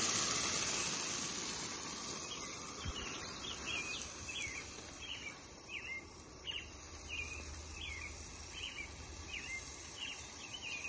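Steady hiss of a camp stove burner and boiling pot, fading away over the first couple of seconds, then a songbird chirping repeatedly in the open air, short swooping chirps about two a second.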